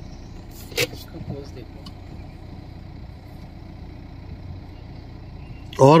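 Car engine running steadily at low revs, a low hum heard from inside the cabin, with a single sharp click about a second in. A man's voice starts loudly near the end.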